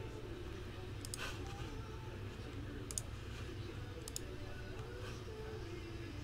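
A few isolated sharp clicks of a computer mouse, spaced a second or more apart, over a steady low hum.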